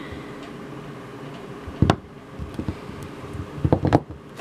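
Small vinyl figures knocking on a tabletop: one sharp tap about halfway through, then a quick clatter of several taps near the end as two figures topple over. A steady low hum sits underneath.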